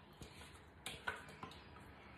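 A few faint knocks and ticks, the loudest about a second in, as thick cauliflower sauce is shaken out of an upturned Thermomix mixing bowl onto a baking dish.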